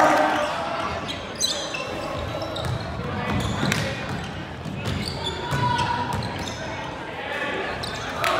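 Basketball game play on a hardwood court: a ball bouncing, sharp high sneaker squeaks and players' voices calling out in the gym.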